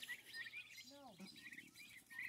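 Faint, high chirping of young chickens, with one short low call that rises and falls about a second in.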